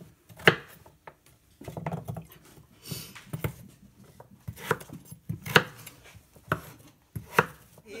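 A large kitchen knife chopping raw pumpkin into chunks on a wooden cutting board: sharp, irregular knife strikes against the board, several in quick succession toward the second half.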